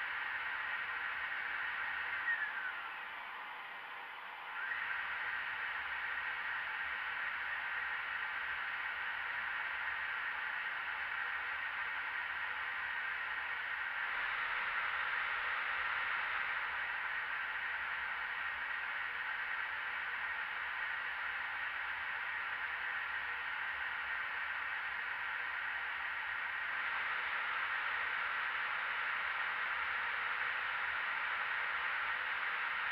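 Steady rush of air and fan noise on the flight deck of a powered-up Boeing 777, with a faint steady tone in it. The noise dips about two and a half seconds in, then returns at about five seconds and holds steady.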